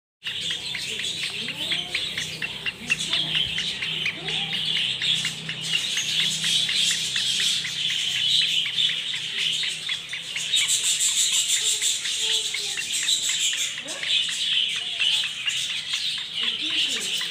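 Continuous, dense high-pitched chirping of birds, busier for a few seconds past the middle, over a steady low hum.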